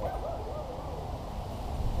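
A dog whining in a high, wavering tone, over a steady low rumble.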